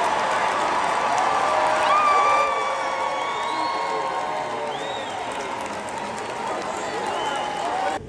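Large arena crowd applauding and cheering, with scattered shouts and whoops over the clapping. It is loudest about two seconds in, then slowly dies down.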